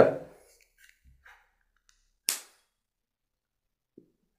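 A single short, sharp click about two seconds in, with near silence around it.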